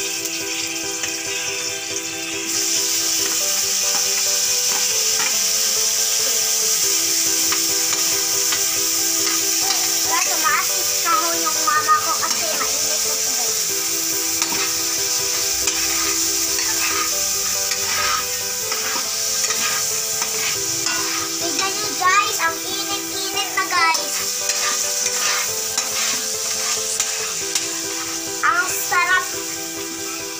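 Chopped tomatoes frying in hot oil with pieces of dried fish in a wok, sizzling steadily while stirred with a long metal spatula. The sizzling grows louder about two seconds in.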